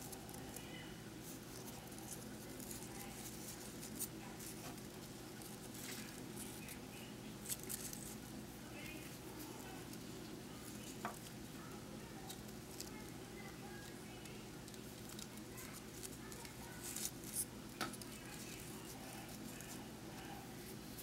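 Faint handling of grosgrain ribbon as loops are turned and pushed onto a sewing needle: soft rustling with a few scattered small clicks, over a steady low hum.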